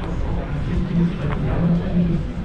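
Indistinct speech from a man's voice over a steady low rumble.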